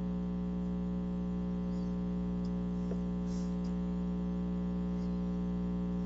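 Steady electrical hum with a ladder of evenly spaced overtones on a web-conference audio line. It is line noise from a participant's connection.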